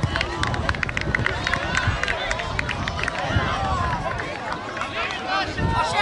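Spectators and players shouting and calling out over each other at a youth football match, with a cluster of sharp claps in the first couple of seconds.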